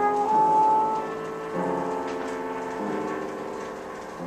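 Improvised acoustic jazz: grand piano chords struck three times, each left to ring and fade, with a trumpet holding a high note through the first second.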